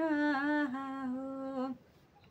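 A woman singing unaccompanied, holding one long wordless note at the end of a line of a vivah geet (wedding folk song), dipping slightly in pitch midway. The note stops near the end.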